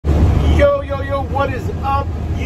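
Steady low rumble of a truck's engine and road noise heard inside the moving cab, loudest in the first half second, with a man's voice starting over it about half a second in.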